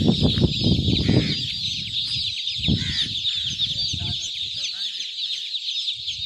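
A large crowd of newly hatched chicks peeping all at once: a dense, continuous chorus of short, high chirps. Low rumbling noise sits under it in the first second or so.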